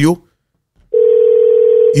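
A steady electronic tone with the thin, narrow sound of a telephone line, starting abruptly about a second in and lasting about a second until it stops as speech resumes: a phone-line tone like a dial tone coming through the call-in line.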